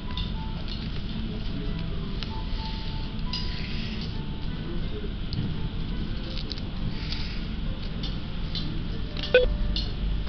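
Restaurant background sound: faint music and clinking of dishes over a steady low hum, with rustling paper and scattered small clicks. A single sharp knock comes near the end.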